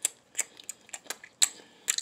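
Lip smacks and mouth clicks of a person chewing or miming a taste, a string of short, irregular clicks several times a second.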